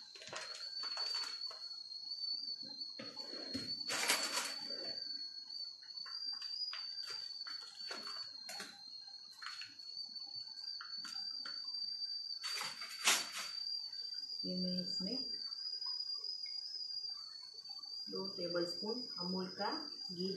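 Foil-lined ghee packet crinkling and tearing as it is opened by hand: scattered crackles, with louder rips about four seconds in and again about thirteen seconds in. A thin, steady high tone runs underneath.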